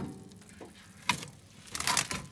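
Plastic microwave-meal tray and its film cover crackling and clicking as the hot tray is picked up off a plate. There is a sharp click about a second in, and a denser crackle near the end.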